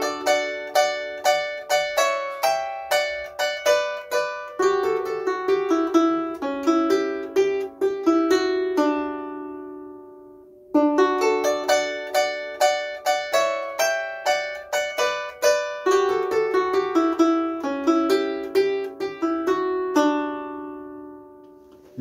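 Llanera harp's treble strings plucked by the right hand alone, no bass, playing a short melodic phrase built on thirds. The phrase is played twice, each time ending with the last notes left to ring and fade.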